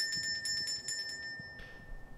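Small metal hand bell shaken quickly, its clapper striking several times a second, then the ringing fades away about a second and a half in. It is rung as a dinner bell, the signal that food is being put out for the birds.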